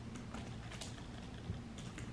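Light, uneven typing on a computer keyboard: a faint run of soft key clicks.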